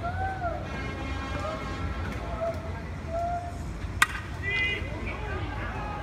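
A bat hits a pitched baseball with one sharp crack about four seconds in, amid shouts from players and spectators.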